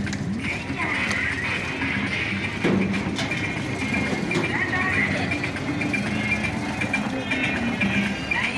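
Loud traditional dance music with busy percussion and voices.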